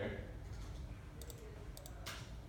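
A few light clicks of computer keys, in two quick pairs about a second and a half in, as an AutoCAD command is entered on the keyboard.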